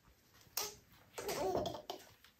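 A toddler laughing and babbling: a short sound about half a second in, then a longer one with rising and falling pitch from just past a second in.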